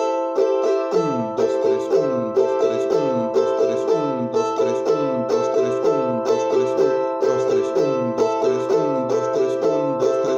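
Charango strummed in the galopa pattern of a huayno rasgueo: a down stroke followed by a quick down-up, repeated steadily on a ringing chord.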